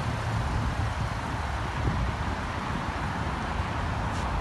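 Steady outdoor background noise: an uneven low rumble of wind buffeting the microphone, with no distinct events.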